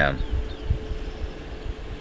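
Outdoor wind buffeting the microphone in uneven low rumbles, with a faint steady hum underneath.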